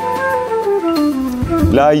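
Recorded latin jazz: a melody stepping down note by note over about a second and a half. A man's voice comes in near the end.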